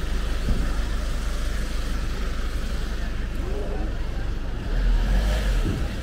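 Busy city-street background: a steady low rumble with faint voices of passers-by, swelling louder about five seconds in.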